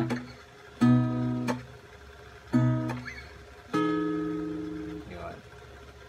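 Acoustic guitar fingerpicked in a 5-3-2 pattern: three-note chords plucked about a second in, again near two and a half seconds, and near four seconds, each left to ring out. Between them the strings are muted with a short, damped chop.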